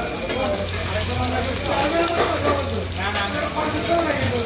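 Hilsa fish pieces and eggplant slices sizzling in oil on a large flat metal griddle, steady throughout, while a metal spatula is worked over them.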